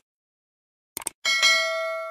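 A quick triple mouse click about a second in, then a bright notification-bell ding that rings on and slowly fades: the sound effect of a subscribe button being clicked and its bell ringing.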